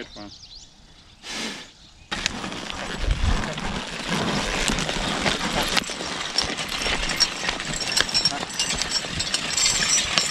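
Steel spring-tooth harrow drawn by a horse, its tines dragging and scraping through loose, stony soil: a steady scratchy rush full of small clicks and rattles that starts abruptly about two seconds in, after a quiet start.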